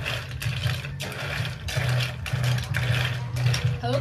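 Snail shells clattering and scraping against each other as chopsticks stir a plastic basin full of live freshwater snails, over a steady low hum.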